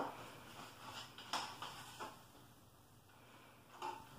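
Faint handling noise from black plastic milk crates and a PVC-pipe latch: a sharp click at the start, then a couple of soft plastic knocks a second or two in.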